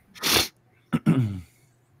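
A short, sharp breath of air, then a man clearing his throat with a brief grunt that falls in pitch.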